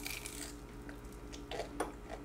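Quiet eating sounds: faint biting and chewing of crisp fried cheese sticks, with a few soft crunches near the end, over a faint steady hum.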